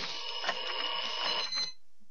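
A bell ringing steadily with a bright, high, buzzing tone, like an alarm-clock or timer bell, stopping about a second and a half in. Below it is a faint steady tape hiss.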